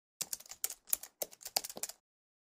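Computer keyboard typing: a quick run of key clicks as a word is typed.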